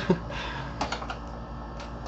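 A few light clicks and taps of a hand handling the metal parts inside a darkFlash DLV22 PC case, near its drive bay.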